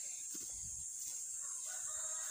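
A rooster crowing faintly, one drawn-out call that begins about halfway through.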